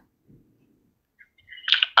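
A pause in a phone call: near silence with a couple of faint clicks, then a man's voice starts speaking near the end.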